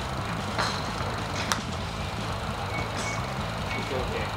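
A single sharp click about a second and a half in as an iron strikes a golf ball on a short chip shot from a range mat. It sits over a steady low rumble of background traffic.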